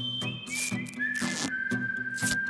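A cartoon whistle effect stepping down in pitch in three or four steps, then holding one long low note, over background music with a steady looping beat. Two short swishes come in the first half.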